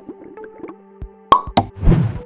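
Cartoon sound effects of an animated outro: a few sharp pops in quick succession over faint sustained musical tones, then a louder sweeping effect near the end.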